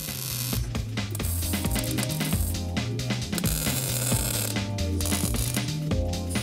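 MIG welder crackling in several bursts as a steel patch panel is welded into a car's floor, over background music with a steady bass line.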